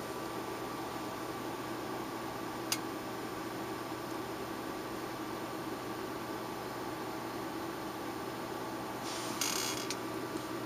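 Steady background hiss with a faint constant hum, broken by one sharp click about three seconds in and a short rustle of handling, ending in a click, near the end.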